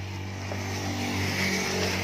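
A steady, low, engine-like motor hum holding one pitch, with a brief scraping rush near the middle as cardboard and foam packing are handled.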